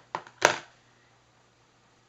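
One sharp click from art supplies being handled on the craft mat, about half a second in, then near silence.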